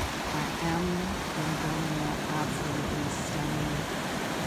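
Steady rush of surf breaking and washing over dark shoreline rocks, with a woman's voice over it.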